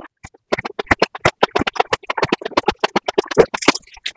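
Close-miked eating sounds: biting and chewing with a rapid run of short, crisp crunches and wet mouth clicks, starting after a brief pause.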